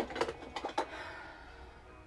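Plastic makeup compacts and containers clicking and clattering as they are picked up and sorted through, with several sharp clicks in the first second, then quieter handling.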